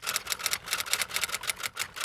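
Typewriter keys clacking in quick succession, about seven strikes a second: a typing sound effect that goes with text being typed out on screen.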